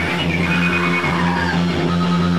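Loud live noise-rock band playing: distorted amplified guitar and bass holding a steady low drone, with a high whining tone that slides downward about a second in.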